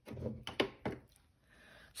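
Soft handling knocks of a wood-mounted rubber stamp being picked up off a craft mat: two light wooden taps about half a second in and just before one second, then quiet.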